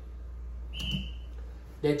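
A short high-pitched beep-like tone a little under a second in, lasting about a third of a second, over a low steady hum.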